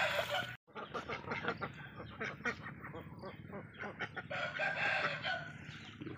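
Farm ducks calling in short, repeated calls. At the very start, splashing from a duck bathing in pond water breaks off abruptly under a second in.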